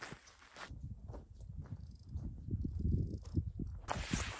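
Footsteps on a gravelly dirt trail: irregular low thuds and scuffs of walking, with a brief hiss at first.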